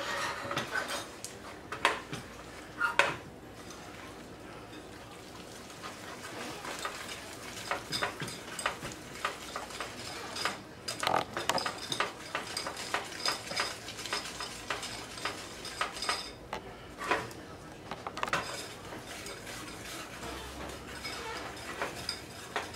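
Wire whisk stirring a butter, brown sugar and corn syrup caramel in a stainless steel saucepan, rapid metallic clicks and scrapes against the pan as the mixture heats, not yet boiling. A few separate clinks in the first seconds, then steady fast whisking from about seven seconds in.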